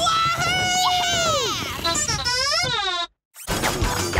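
A cartoon character's long, drawn-out shout, its pitch falling away at the end, followed by a wavering, warbling cry. The sound cuts out completely for a moment about three seconds in, then background music with clattering effects starts.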